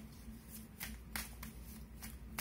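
A deck of tarot cards shuffled by hand: short soft strokes of the cards, about three a second, starting around the middle.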